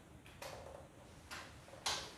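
A pause in the accordion playing: a few short soft rustles as the button accordion is handled, and a sharp click near the end.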